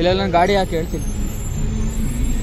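Street traffic and crowd noise: a voice calls out briefly, then a car engine runs at a steady low hum in slow-moving traffic.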